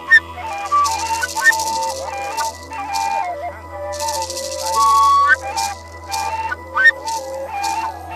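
Cane flutes with wax heads play a melody of stepping, held notes, while a gourd rattle is shaken in repeated bursts, some of them long, sustained shakes.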